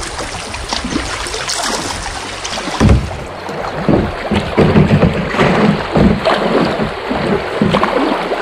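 Choppy river water rushing and splashing against a kayak hull as it runs through a riffle, with irregular paddle splashes and wind buffeting the microphone. There is a sharp splash about three seconds in.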